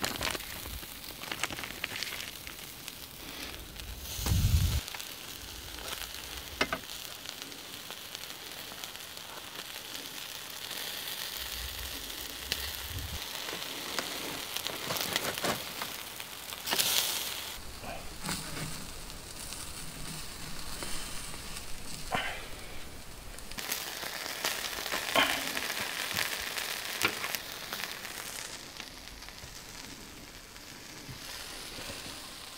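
Beef hamburger patties sizzling steadily on a small charcoal grill, with scattered crackles and pops. There is a brief low rumble about four seconds in.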